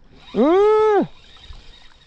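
One drawn-out wordless vocal call, under a second long, that rises and then falls in pitch: a person's voice.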